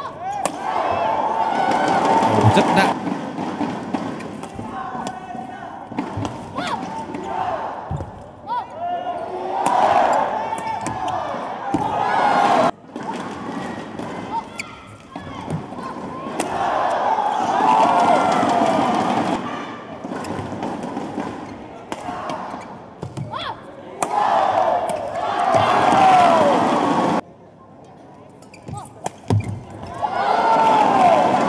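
Badminton rallies in an indoor hall: sharp racket strikes on the shuttlecock and knocks on the court. Several bursts of many voices shouting and cheering come every several seconds as points are won.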